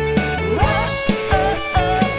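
Rock band playing an instrumental passage: electric guitar over drums and bass, with a steady beat of about two drum hits a second.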